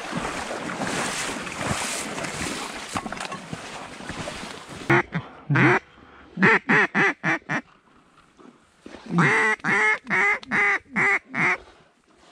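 About five seconds of rustling and splashing movement noise, then a mallard duck call blown in runs of short quacks: a quick pair, a run of about six, and a longer run of about eight near the end.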